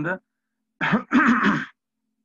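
A man clearing his throat, a short burst followed by a longer, louder one about a second in.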